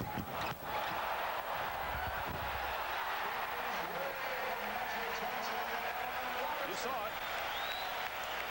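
Steady arena crowd noise during live basketball play, with a basketball bouncing on the hardwood court.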